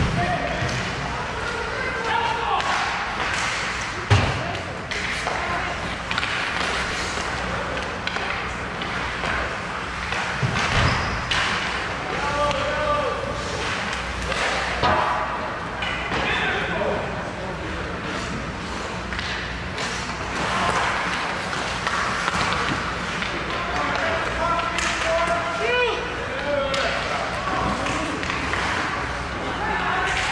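Ice hockey game in play in an echoing rink: sticks and puck clacking and banging against the boards, with the loudest bang about four seconds in. Voices call out now and then around the rink.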